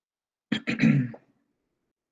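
A man briefly clears his throat, about half a second in, with a few sharp catches and then a short low rasp.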